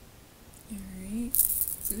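A woman's voice: after a quiet start, a short drawn-out vowel, then a hissy 's' leading into a spoken word near the end.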